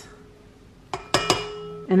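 A few sharp metallic clinks with a brief ring about a second in: a utensil knocking against a stainless-steel stand-mixer bowl and its wire whisk.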